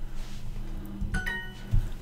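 Duolingo's correct-answer chime, a short bright ding about a second in, marking the typed answer as right, over a low steady hum and a few clicks.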